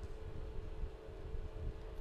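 Steady low background rumble with a faint even hum: room tone.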